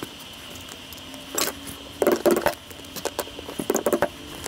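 Workbench handling noises: short clusters of clicks and rattles as wooden knife-handle scales and small parts are picked up and set down, once about a second and a half in, loudest around two seconds, and again near the end.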